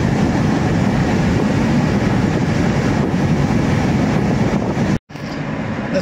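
Steady road and engine rumble of a moving Toyota car, heard inside the cabin. The sound cuts out for a split second about five seconds in, then carries on.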